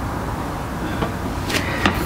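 Plastic step trash can with a butterfly lid: a sharp plastic click about a second and a half in, and another just before the end, as the foot pedal is pressed and the lid halves swing open, over a steady background noise.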